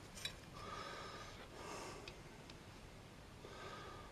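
Quiet room sound with a few faint, soft breath-like noises and two light clicks, one about a quarter second in and one about two and a half seconds in.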